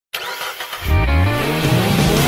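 A car engine revving up, its pitch rising from about a second in, mixed with music.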